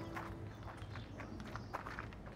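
Faint footsteps and light scuffs on a paved path, a quick run of soft steps over quiet outdoor background, with the last notes of a music cue dying away at the very start.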